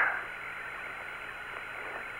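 Steady hiss of the Apollo air-to-ground radio voice link, a narrow band of static between transmissions, with a faint steady tone in it.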